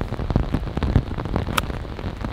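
Steady rain on a golf course, with a single sharp click about one and a half seconds in as a pitching wedge strikes a golf ball.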